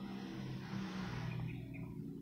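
Quiet room tone: a faint steady low hum, with a soft rush of noise in the first second and a half.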